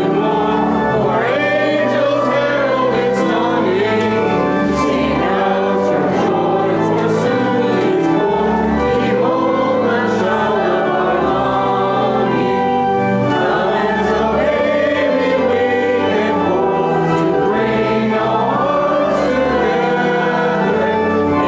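Church congregation singing a hymn in unison, with organ accompaniment holding sustained notes beneath the voices.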